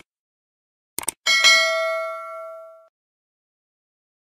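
Subscribe-button animation sound effects: a quick double mouse click about a second in, then a bright notification-bell ding that rings out and fades over about a second and a half.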